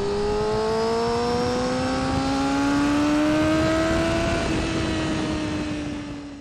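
Honda CBR600F4i inline-four sportbike engine heard onboard under steady acceleration, its pitch climbing smoothly for about four seconds. It then eases off and falls gently, under a constant rush of wind noise.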